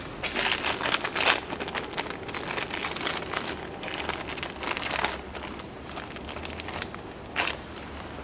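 Clear plastic bag of new stabilizer-link bushings crinkling as it is handled, in irregular bursts for about five seconds, then quieter with one short burst near the end.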